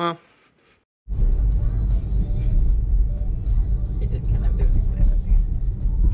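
Steady low road rumble inside a moving car's cabin, starting suddenly about a second in after a moment of silence.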